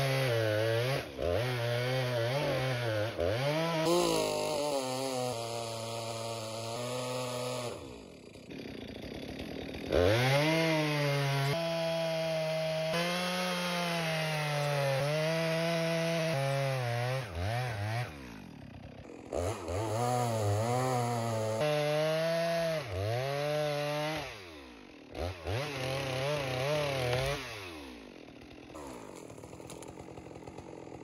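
Stihl MS462 two-stroke chainsaw with a 32-inch bar bucking through a large white fir log: the engine runs hard under load, its pitch sagging and recovering as the throttle is eased off and opened again several times. It drops to a lower, quieter running near the end as the cut finishes.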